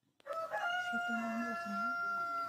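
A rooster crowing: one long call that opens with a couple of short notes and then holds a steady pitch.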